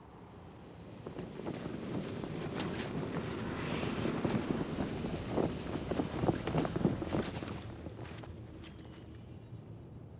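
A rushing, wind-like swell of noise dense with crackles, the sound design of a film trailer, building for about six seconds and then easing off.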